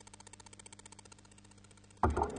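Near silence: a faint, steady electrical hum with a fast, fluttering buzz over it.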